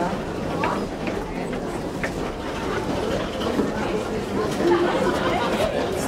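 Indistinct chatter of many people talking at once, with no single voice standing out.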